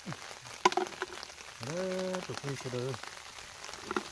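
Steady patter of rain falling on vegetation and water, with one sharp click about two-thirds of a second in.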